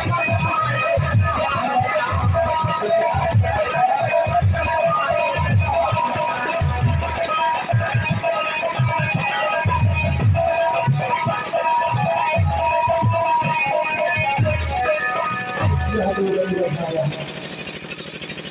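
Loud amplified dance music in a folk kaharwa rhythm: regular low drum strokes under busy melodic instrument lines. The level drops sharply near the end.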